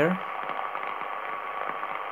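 Shortwave receiver audio from a Yaesu FRG-7 on the 10 m band with the noise blanker switched off: a steady rush of band noise and pulsating interference, with the weak tone of the wanted signal barely showing through it.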